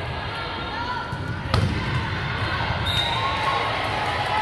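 A volleyball struck hard once, about one and a half seconds in, over the voices of players and spectators in the gym. A short high squeak sounds near the three-second mark.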